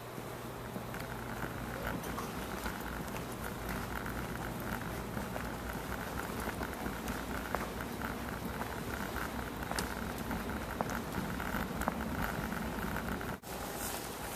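Steady background hum and hiss with scattered faint clicks and taps.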